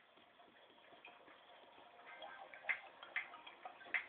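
Faint, irregular ticks and clicks that grow louder and more frequent in the second half, with a few sharper clicks near the end.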